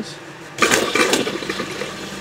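Water rushing through the van's newly plumbed shower lines during a leak test: it starts suddenly about half a second in and keeps running, over a steady low hum from the water pump.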